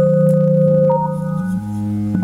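Electronic keyboard played by hand: slow chords of steady, held tones, with the notes shifting to new pitches partway through.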